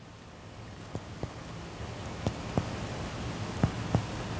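Indirect finger percussion of the back of the chest: a middle finger striking the middle finger of the other hand laid flat on the bare back, in three pairs of quick taps about a second and a half apart. The taps are meant to bring out the resonant note of air-filled lung over the spaces between the ribs.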